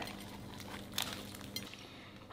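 Quiet room with faint eating sounds: soft bread being bitten and chewed, with a small click about a second in over a faint steady hum.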